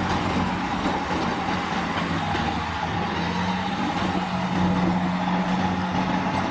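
A Renault eight-wheel dump truck's diesel engine running steadily while the tipper body is raised to unload soil.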